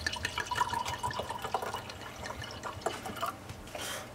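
A drink being poured from a bottle into a glass tumbler: liquid trickling and splashing into the glass, with many small drips and clicks.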